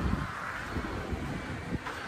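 Steady low outdoor rumble of light wind on the microphone with faint traffic in the background.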